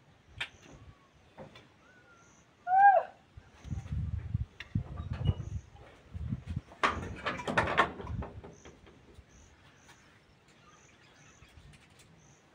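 A bird gives one loud, swooping call about three seconds in, with fainter chirps around it and high-pitched peeps throughout. Low thumps follow, then about a second of rustling and rattling around seven seconds in as the fabric curtain in the doorway is handled.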